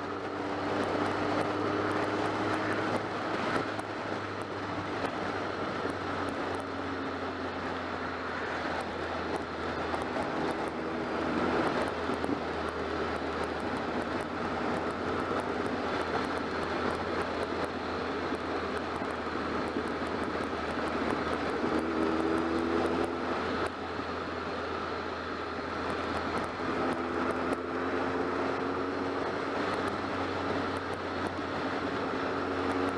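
BMW motorcycle engine running at a steady road speed under wind and road noise, its engine note coming up more clearly now and then before sinking back into the rush of air.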